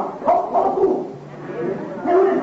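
A person's voice, raised and not made out in words, during the first second, then dropping quieter for a moment before picking up again faintly.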